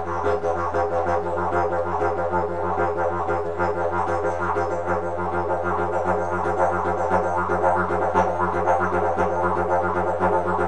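Didgeridoo playing an unbroken low drone, with a fast rolling rhythm pulsed over it by tongue and throat articulation on the 'tang' sound.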